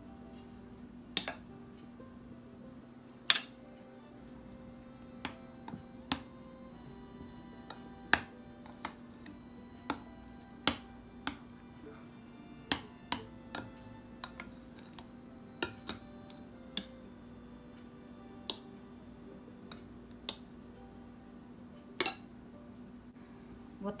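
Sharp, irregular clicks of a metal spoon and whisk knocking against a ceramic mixing bowl while whipped egg whites are folded into a thick batter. A steady low hum and faint music lie underneath.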